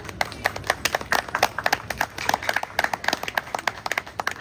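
A small group of people clapping, many separate hand claps in an irregular patter.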